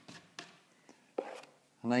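Taping knife working joint compound around a drywall hole: a few faint short scrapes and taps, the strongest a little over a second in. A man starts speaking near the end.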